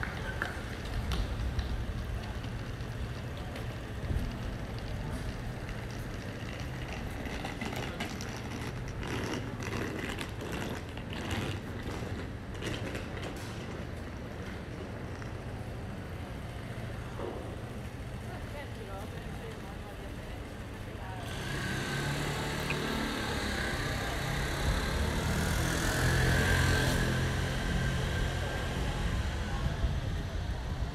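City street ambience heard while walking: a steady low rumble of traffic, with passers-by talking. There is a run of sharp clicks about a third of the way in, and the sound grows louder from about two-thirds in.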